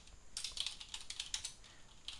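Computer keyboard typing: a quick run of keystroke clicks starting a moment in, thinning out in the second half.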